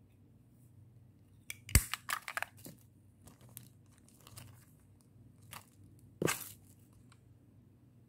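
Crinkly plastic packaging and small plastic cosmetic cases handled: a cluster of sharp crackles and a hard click about two seconds in, then another crackling burst about six seconds in.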